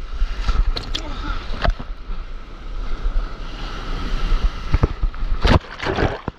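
Wave breaking over a camera held at the water's surface: rushing surf and whitewater with wind on the microphone and several sharp splashes, the loudest about five and a half seconds in.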